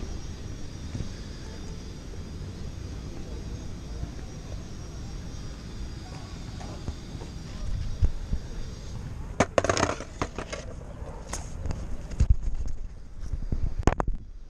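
Skateboard wheels rolling over stone paving, a steady low rumble. About nine and a half seconds in, a run of sharp knocks and clatter begins and lasts to the end.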